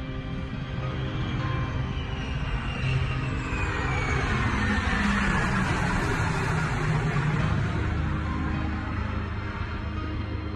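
Orchestral background music with a B-2 stealth bomber's jet engines passing low overhead: a rushing jet noise swells through the middle, with a whine that falls in pitch as the aircraft goes by.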